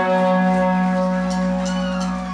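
Electric guitar and bass holding a chord that rings out steadily, with a few faint sliding tones near the end.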